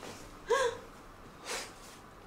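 A woman's short, breathy 'ah', like a gasp, rising in pitch about half a second in, then a brief audible breath about a second later.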